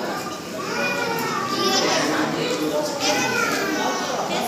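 Many children's voices chattering and calling out at once, a steady hubbub of overlapping high-pitched voices.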